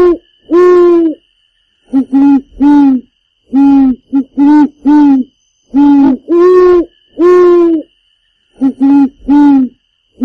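Loud hooting: a series of short, hollow, pitched hoots in irregular groups of two to four, each note about half a second long, with a faint steady high tone beneath them.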